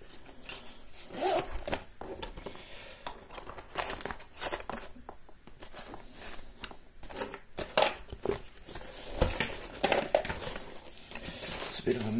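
Hands rummaging among lockpicking tools: rustling of a fabric tool roll, with scattered clicks and knocks as small tools and objects are moved about on the desk.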